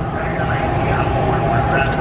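Steady drone of race vehicle engines running, with general track noise.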